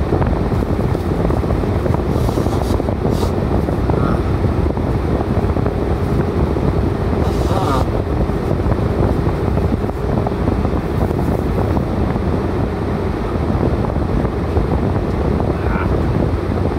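Motorcycle engine idling while stopped, a steady low rumble with wind noise on the microphone. Traffic passes close by, one vehicle about halfway through.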